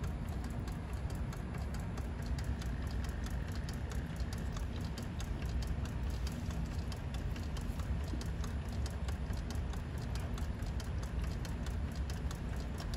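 Steritest Symbio peristaltic pump running at moderate speed, its rollers making a steady, rapid ticking over a low hum as it pumps rinse diluent through the tubing into the filter canisters.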